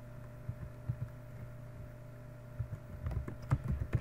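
Computer keyboard typing: a couple of single keystrokes in the first second or so, then a quicker run of keystrokes in the last second and a half. A steady low hum runs underneath.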